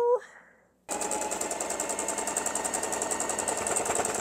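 Singer electric sewing machine running a steady, rapid run of stitches through linen fabric. It starts about a second in and stops near the end.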